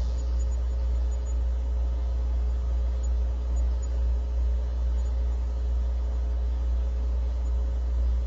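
Steady low hum and background noise from the narration microphone's recording line, even throughout, with no other sound.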